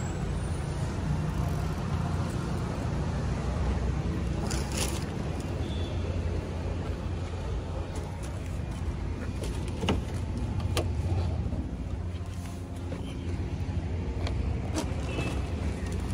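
Steady motor-vehicle engine and road noise, a low rumble with a few faint clicks scattered through it.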